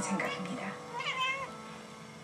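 A house cat meowing once, about a second in, a short call that rises and falls in pitch. Television dialogue and music play faintly behind it.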